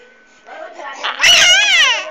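A baby lets out a loud, high-pitched squealing cry that builds from about half a second in, its pitch rising and then falling.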